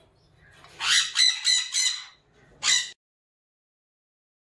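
Parrot chicks in the nest giving harsh begging squawks: a quick run of about five calls, then one more a moment later.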